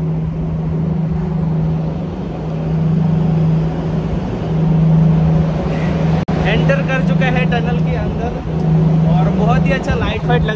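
A motor vehicle driving through a long road tunnel, heard from the back of the moving vehicle: steady engine and road noise with a low drone throughout.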